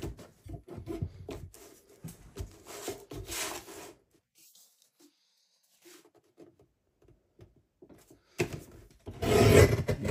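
Card sheet sliding and rustling on a paper trimmer's base as it is lined up, then a few seconds of near quiet. Near the end, a loud rasping crunch as the trimmer's blade arm is pressed down through the card.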